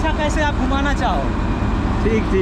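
Steady low rumble of a heavy diesel engine idling close by, with a man's voice over it in the first second.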